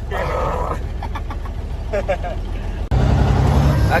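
Semi-truck's diesel engine rumbling, heard from inside the cab, with laughter and voices over it. About three seconds in, the sound breaks off for an instant and the engine rumble comes back louder.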